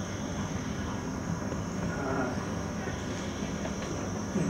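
Steady low rumbling background noise with no distinct events, from a film soundtrack playing in a hall.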